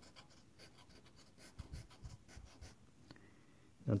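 Faint scraping of a scratch-off lottery ticket's coating being scratched off by hand, in a series of short strokes.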